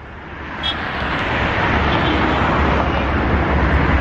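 Road traffic noise: a steady rush of passing vehicles with a low rumble, building over the first second and then holding.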